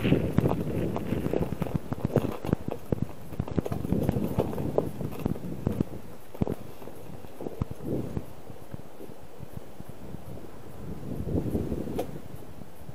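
Bicycle jolting over rough, cracked sea ice: irregular knocks and rattles, dense at first and thinning out after about eight seconds.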